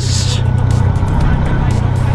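Motorcycle engine running steadily with a low hum while riding, with a brief rush of hiss at the start.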